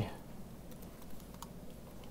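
Faint typing on a computer keyboard: a few scattered key clicks over low room hum.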